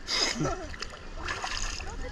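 Seawater splashing close by, with a sharp splash right at the start and a softer one about a second and a half in, over a low rumble of moving water.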